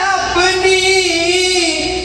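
A man singing a wordless stretch of a devotional song, holding one long, slightly wavering note for about a second and a half.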